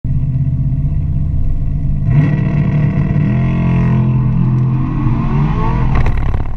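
Cadillac CTS-V's V8 heard from inside the cabin, running steadily at first, then revving hard about two seconds in as the car launches down the drag strip. Its note climbs in pitch as it accelerates.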